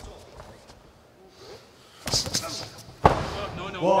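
A short flurry of boxing gloves landing about two seconds in, then one heavy thud a second later, the loudest sound, as a boxer drops onto the ring canvas. The fall is a slip, not a knockdown.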